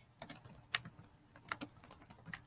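Typing on a computer keyboard: a handful of irregular keystroke clicks, with the loudest pair about one and a half seconds in.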